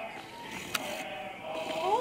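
Faint television audio of a children's film, with a voice sliding up and then down in pitch near the end, and one sharp click about three-quarters of a second in.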